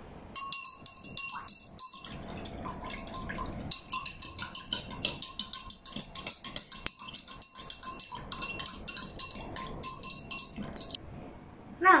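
Metal spoon stirring sugar into water in a glass tumbler, clinking rapidly against the glass with a ringing note. It starts about half a second in and stops about a second before the end.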